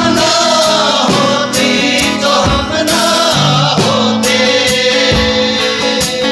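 A group of men singing together to a strummed acoustic guitar. The voices come in at the start over the guitar's strumming.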